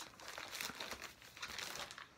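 LP record album jackets being handled, faint irregular rustling and crinkling with small clicks as one record is set down and the next picked up.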